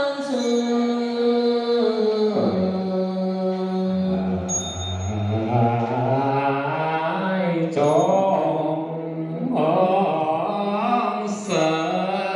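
Buddhist mantra chanting in long, drawn-out tones that slide slowly from pitch to pitch. A sharp, high ringing strike cuts in every three to four seconds.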